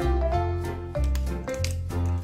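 Background music: an upbeat, jazzy tune with bass notes changing about twice a second.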